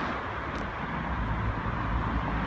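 Street traffic noise: a low rumble of a car's engine and tyres that grows in the second half.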